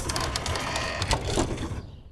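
Wooden sectional garage door closing, its mechanism giving a steady rattle of small clicks that fades away near the end.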